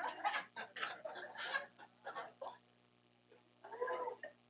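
Laughter in short, choppy bursts that die away after about two and a half seconds, followed by a brief voice near the end.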